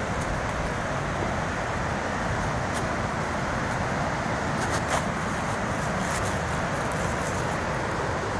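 Steady, even rush of water from a waterfall pouring over rocks.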